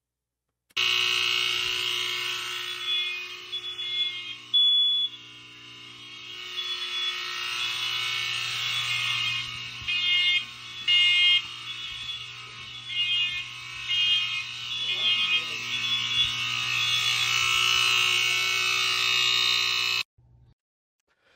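Several smoke alarms sounding at once, high-pitched and out of step, beeping in irregular groups over a steady low electrical buzz. Modern BRK alarms wired to an old FireX FX-1020 are set off as soon as power is switched on, because the FX-1020 keeps a constant voltage on the interconnect line.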